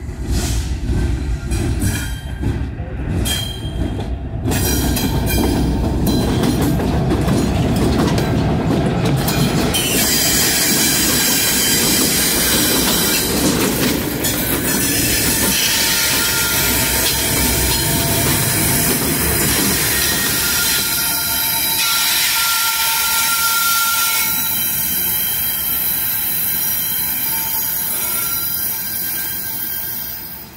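Norfolk Southern diesel locomotive passing close, its engine rumbling, with a run of clicks over the rail in the first few seconds. From about ten seconds in, the wheel flanges squeal against the rail in loud, high-pitched, ringing tones that carry on to the end.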